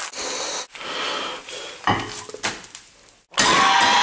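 A fried egg sizzling in oil in a frying pan, heard in several short choppy bursts with brief breaks between them. The loudest burst comes near the end.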